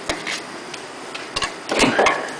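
Sharp metal clicks and a louder clank and scrape near the end as a bottomless portafilter is fitted and twisted into the group head of a lever espresso machine.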